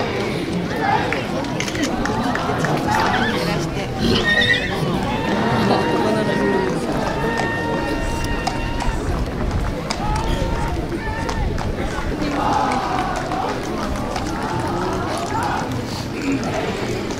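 Spectators' chatter and voices along a street procession, with a horse whinnying in the middle.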